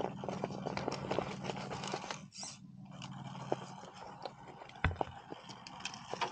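Axial SCX10 Pro scale RC rock crawler climbing over rocks: a low steady drivetrain hum for the first two seconds, with tyres and chassis clicking and crunching on stones and dry leaves throughout. One heavy thump comes about five seconds in.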